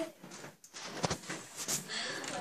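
A few short clicks and light knocks from hands handling the model and desk things, the sharpest click about a second in.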